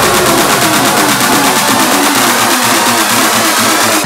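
Electronic dance track: a loud, dense, distorted synth section with a fast repeating pulse, its deep bass thinning out about halfway through.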